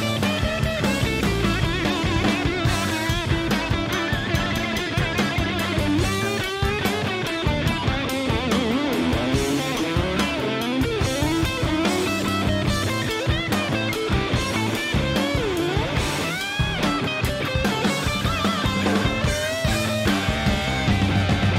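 Instrumental blues-rock: a lead electric guitar solos over a drum kit, its notes bending and wavering in pitch, with a wide upward bend near the end.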